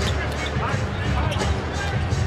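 Basketball dribbled on a hardwood court, a series of short bounces, over a steady low arena din.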